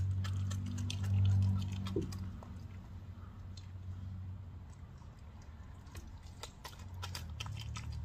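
A coyote chewing and crunching a raw chicken leg, with many short wet clicks of its teeth. Under the chewing runs a low steady growl-like drone, the 'weird sound', loudest in the first couple of seconds and fainter after.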